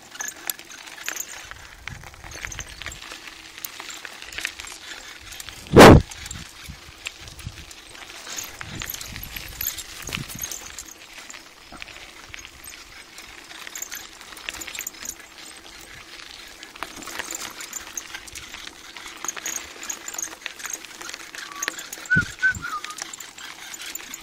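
Bicycle rolling along a gravel track: a steady crunch and rattle of tyres on loose stones, picked up on a handheld phone. One loud knock about six seconds in, and a smaller one near the end.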